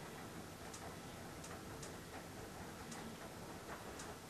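Quiet room tone: a faint steady hiss with about five soft, irregularly spaced clicks.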